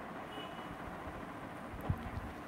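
Steady low background noise in a small room, with a faint short high tone about half a second in and a soft low thump near the end.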